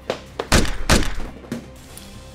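Two heavy thuds of blows landing in a scuffle, about half a second apart, with a couple of lighter knocks around them, over sustained background music.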